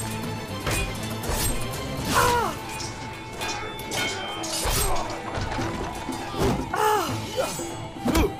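Sword clashes and blows in a melee fight, repeated sudden impacts over a steady dramatic music score, with a couple of short shouted cries that fall in pitch, about two seconds in and again near the end.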